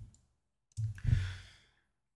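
A man sighs, one breathy exhale starting a little under a second in and fading out within about a second, preceded by a faint click.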